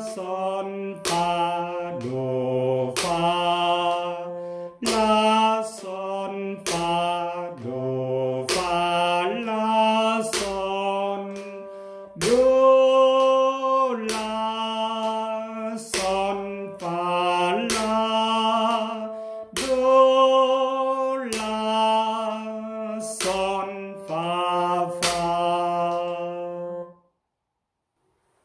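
A man sings the solfège syllables (fa, sol, la…) of a slow bass-clef exercise in F major, one note to each beat and held for the longer notes. A sharp click marks each beat. The singing stops about a second before the end.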